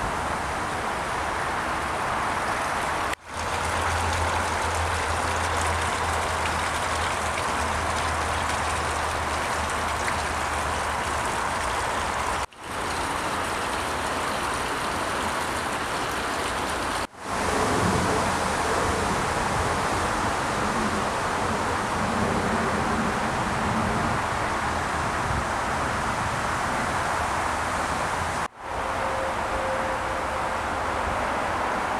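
Water of a small stream running and splashing past a broken concrete dam, a steady rushing hiss with a low rumble under it early on. The sound drops out briefly four times.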